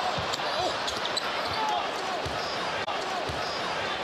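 Arena crowd noise from a live NBA game, with a basketball being dribbled on the hardwood court, a thump about once a second.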